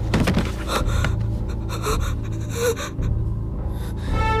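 A boy gasping and breathing hard in shock, several quick breaths in the first three seconds, over a low, sustained music bed.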